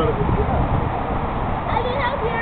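Children's high-pitched voices calling and squealing, with gliding shouts, over a low rumble on the microphone.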